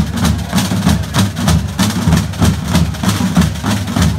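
A drum band plays a brisk, steady marching rhythm on field drums, with many drums struck together in even, repeating strokes.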